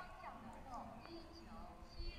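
Faint, distant public-address announcement from the high-speed rail station.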